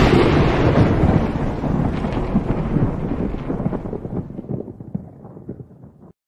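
A cartoon sound effect: a sudden loud crash that breaks into a crackly rumble and fades away over about six seconds.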